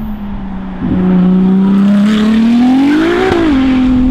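Ferrari 296 GTB's twin-turbo V6 with a Novitec exhaust, driving past under power. The note gets louder about a second in, climbs steadily, drops sharply a little after three seconds in, and then runs on at a steady pitch.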